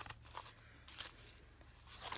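Faint handling sounds: a few light ticks and rustles as small paper die-cut pieces are gathered into a clear plastic case, over a low steady hum.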